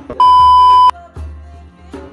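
A loud, steady electronic beep lasting under a second, starting just after the beginning, laid over background music.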